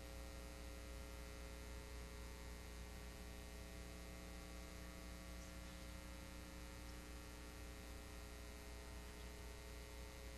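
Steady electrical mains hum with faint hiss, a stack of even unchanging tones and no programme sound: the blank gap left in the broadcast recording for local station ads.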